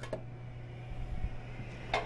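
Kitchen room tone: a steady low hum, with a soft low thump about a second in and a sharp click or clink near the end.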